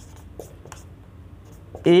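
Marker pen writing on a whiteboard: a run of short, faint scratchy strokes as words are handwritten.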